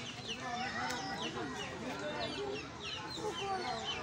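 Chickens and other caged birds calling, with many short, high, falling chirps repeating throughout, over the chatter of people.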